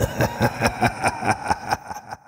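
A rapid pulsing laugh, about five beats a second, fading away near the end.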